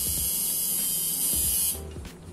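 Electric tattoo machine buzzing with a dense, hissing high-pitched sound that starts abruptly and cuts off near the end.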